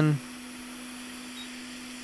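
Steady hiss of air from a Quick 861DW hot air rework station nozzle, with a low steady hum underneath, as it heats the edge-bonding adhesive around a logic-board chip to soften it for removal.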